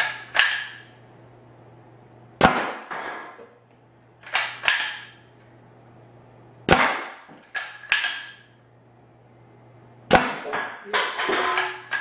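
Homemade Nerf Rival launcher running on compressed air at up to 150 psi, firing repeatedly: sharp pops about every two seconds, each trailed by a short rattle, with a quicker cluster of several pops near the end. A steady low hum runs underneath.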